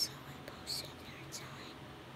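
Soft whispering: three short hissing sounds, like whispered 's' or 'sh' sounds, about half a second apart, over faint room noise.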